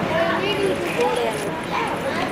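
Indistinct voices murmuring, with no clear words.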